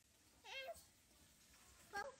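A single brief, high-pitched meow-like cry about half a second in, its pitch dipping and then rising, in otherwise near silence.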